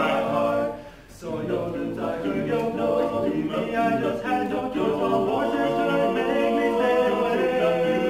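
Male barbershop quartet singing a cappella in close four-part harmony, with a short break about a second in before the voices carry on.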